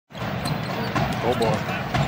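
Basketball dribbled on a hardwood court, a few separate bounces, over steady arena background noise.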